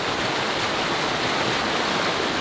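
Fast-flowing river rushing through whitewater rapids over rocks, heard from just above the water: a steady, even rush.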